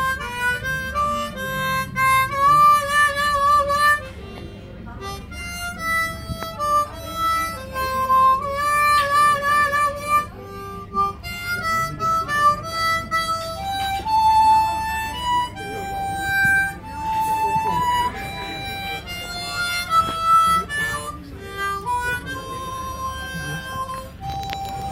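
Harmonica playing a melody of held notes, some with a wavering vibrato.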